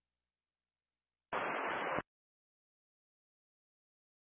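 Silence broken once, about a second in, by a burst of radio static lasting under a second: an air traffic control radio channel keyed with only hiss and no words carried.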